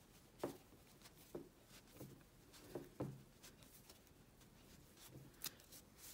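Faint rustling and a few soft knocks of hands pushing a wrapped wire armature through a crocheted yarn tail, a stiff fit.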